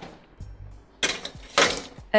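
Short musical transition sting with a whooshing noise sweep in its second half.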